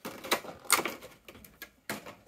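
Pokémon trading cards and their box packaging being handled, giving a few light clicks and rustles, with a sharper click near the end.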